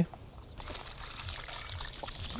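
Water poured from a plastic watering can into a rotted cavity in a tree trunk, splashing and trickling, setting in about half a second in.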